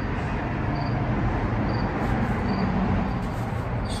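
Steady outdoor background noise with a low rumble, and a faint high chirp repeating about once a second.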